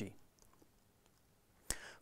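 Near silence between a man's spoken sentences: his voice trails off at the start, then a single sharp click comes shortly before he speaks again.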